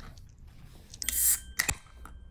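A can of Canada Dry ginger ale being opened: a short fizzing hiss of escaping carbonation about a second in, followed by a few sharp clicks of the metal can.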